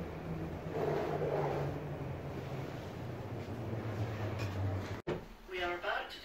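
Cable-hauled airport people-mover shuttle pulling into its platform: a steady low mechanical hum whose tones shift in pitch as it comes in, with a swell of rushing noise about a second in. After a cut near the end, voices inside the car.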